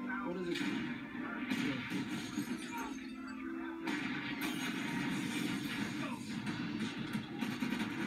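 Television drama soundtrack played through a TV set's speaker: music with indistinct voices and some crashing noise.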